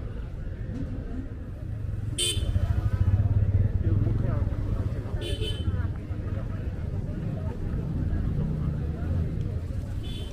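Busy street ambience: road traffic rumbling past, swelling louder a couple of seconds in, with two brief vehicle horn toots.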